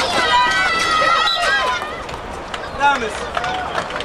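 Several high-pitched women's voices shouting at once on a hockey pitch, with long held calls overlapping in the first two seconds, then shorter scattered calls.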